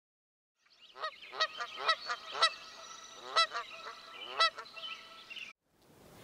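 Bird calls: a quick series of short, repeated calls that start about a second in and cut off suddenly near the end.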